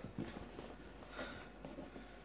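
Faint handling of a cardboard box: a few soft knocks and rustles as it is turned over in the hands.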